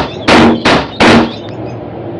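Cartoon sound effect of balloons popping, three sharp pops in quick succession a little under half a second apart, the balloons holding up the house being lost one after another.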